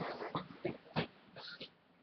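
Several short knocks and clicks in the first second, then a brief breathy rustle: a person getting up from a seat and moving away from the desk.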